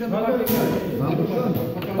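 Men's voices talking, with one sharp knock about half a second in.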